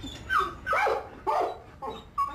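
Dog barking and yelping: four short barks about half a second apart.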